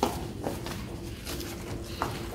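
Quiet room with faint handling noise: a few soft light knocks and rustles as paper play money and a paper gift bag change hands.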